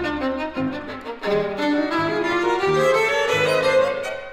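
Violin and grand piano playing together. The violin carries the melody over short, detached piano chords in the bass. From about a second in, the violin line climbs steadily and the music grows louder.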